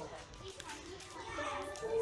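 Background chatter of many children's and adults' voices, with no one voice standing out.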